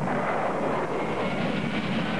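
A steady rushing noise, even in level with no clear strokes or rhythm.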